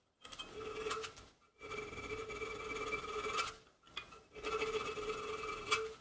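Needle file drawn back and forth across a notch in a flat steel multitool blank held in a bench vise: three long filing strokes, the steel ringing with a steady tone under each stroke.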